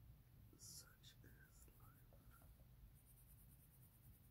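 Near silence: a coloured pencil faintly scratching on paper, in quick short shading strokes near the end, with a brief faint whispered murmur about a second in.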